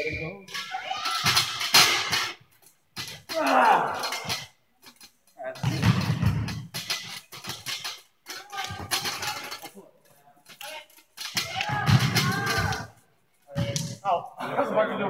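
Men's voices in repeated loud bursts of shouting and vocalising without clear words, including one long falling vocal slide a few seconds in.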